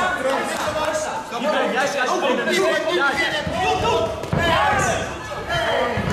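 Several voices shouting and talking over one another, in the manner of spectators and corner coaches calling out during a bout.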